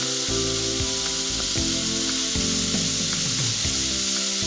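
Waterfall pouring down rock into a plunge pool: a steady rush of falling water, with soft background music of held notes underneath.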